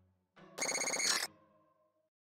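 A short, loud electronic ringing tone, a ringtone-like trill lasting under a second, starts just over half a second in and then dies away in a brief ringing tail. Before it, the last of the song fades out.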